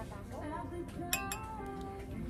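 Two stemmed wine glasses clinked together, two quick strikes about a second in, followed by a clear ringing tone that holds for most of a second. Faint background music underneath.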